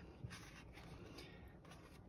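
Near silence with faint rustling of a thin Reemay sheet and the paper cover of a 1940s comic book being handled, with a light tick a little after the start.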